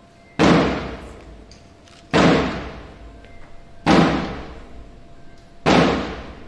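Four loud, evenly spaced thuds about 1.8 seconds apart, each ringing out and dying away over about a second in a large hall.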